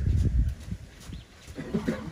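A horse moving through a sand arena, its hooves thudding softly in the sand, over a low rumble that is loudest in the first half second.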